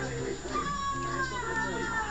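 Cartoon soundtrack: music with steady held notes, over which a higher voice-like sound glides up and down.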